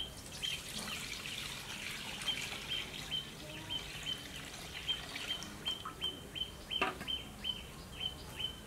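A bird calling over and over, one short high note about twice a second. Partway through, coconut milk is poured from a steel bowl into a metal wok with a soft splashing.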